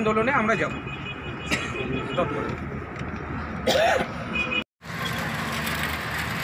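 Outdoor background noise with a few brief voices, broken by a sudden cut. After the cut comes steady city road traffic noise, with something passing close by.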